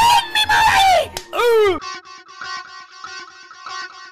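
A loud voice crying out with sliding pitch, the last cry falling, cut off abruptly about two seconds in. Quieter plucked guitar music follows, picking a repeating figure of short notes.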